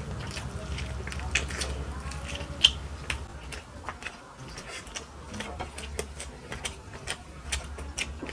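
Eating sounds of two people eating chicken pulao with their hands: irregular chewing and mouth clicks, and fingers working through rice and chicken on the plates, over a low steady hum.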